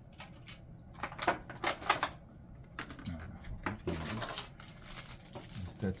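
Small plastic drone parts and packaging being handled: a run of sharp clicks and knocks with some plastic rustling, the loudest two about one and two seconds in.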